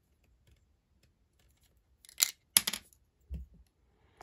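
Plastic Lego bricks clicking as a piece is pulled off a small built model: two sharp clicks about two seconds in, then a soft low knock.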